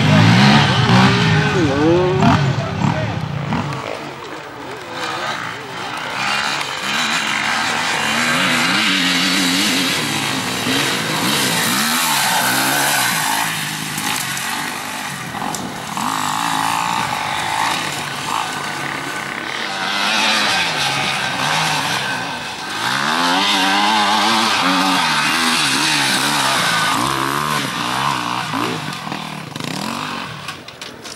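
Enduro dirt bikes revving hard off-road. The engine pitch repeatedly climbs and drops with throttle and gear changes as they accelerate up a dirt trail.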